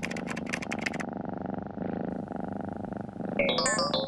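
A steady synthesizer drone, with a quick run of computer keystrokes in the first second and a short run of electronic tones stepping up in pitch near the end.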